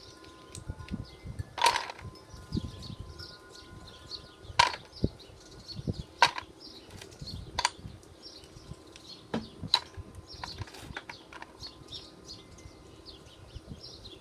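Scattered sharp taps and knocks, about half a dozen loud ones, from a small child's stick and toys striking a plastic bucket and tiled ground. Birds chirp faintly in the background.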